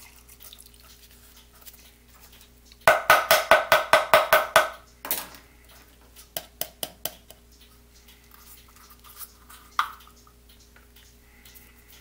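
A small plastic cup tapped quickly against the rim of a plastic mixing cup, about five sharp taps a second for nearly two seconds, to knock the last of the catalyst out. A single louder knock and a few lighter taps follow.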